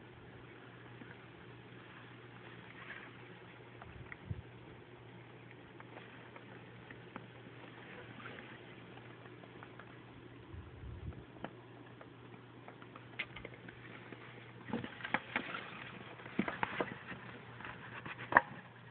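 Faint steady hum of a ceiling fan. In the last few seconds, short scratching and rustling clicks on plastic grow louder as the corn snake strikes and coils around the live mouse in its plastic-lined tub.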